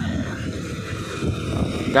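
Wind buffeting a handheld phone microphone: an irregular low rumble with no clear tone.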